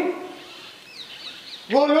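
A few faint, short bird chirps about a second in, during a pause in a man's speech. The speech trails off at the start and resumes near the end.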